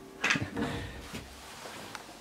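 A few knocks and footfalls on bare wooden stairs, loudest about a quarter-second in, then quiet.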